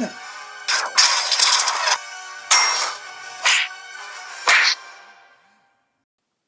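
Background music with added fight sound effects: a crash lasting about a second, then three shorter hits about a second apart. The audio fades out to silence shortly before the end.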